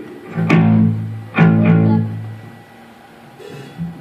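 Two low notes plucked on an amplified electric guitar, about a second apart, each ringing for about a second before fading.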